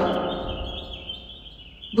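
Steady background of small birds chirping in quick repeated, wavering notes. A spoken word fades out in an echo over the first second.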